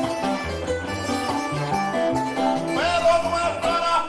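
Cuban punto guajiro music: acoustic guitars and other plucked strings play an instrumental passage over low bass notes. About three seconds in, a male singer comes in with a long held note.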